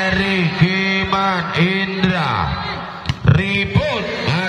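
Voices chanting in a repeated rhythm, about two short phrases a second, over a steady low hum; the chant dips about three seconds in and a few sharp knocks follow.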